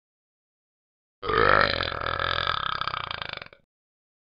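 A long burp, the Talking Ben talking-dog app's burp clip, starting about a second in and lasting about two and a half seconds before it cuts off abruptly.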